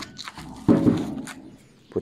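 A heavy paulownia slab being handled on a metal saw table: a loud thud a little past half a second in that drags off, then a short knock.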